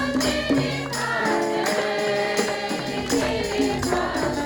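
A group of women singing a Hindi Christian hymn together, with percussion keeping a steady beat.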